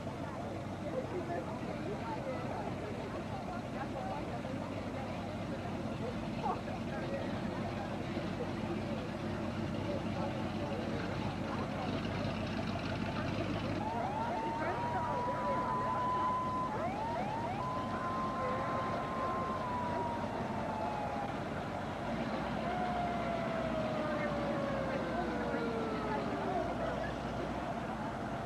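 Street-parade noise: crowd chatter over passing vehicles. About halfway through, a siren comes in, holding a steady pitch and then winding down in long, slow falling glides.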